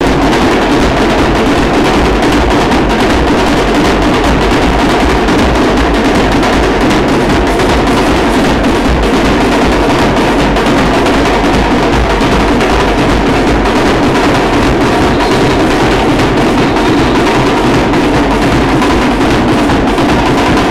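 Comparsa band music played live and loud, driven by drums and percussion.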